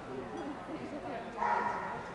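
A dog gives one short, loud bark about one and a half seconds in, over the chatter of people in a large hall.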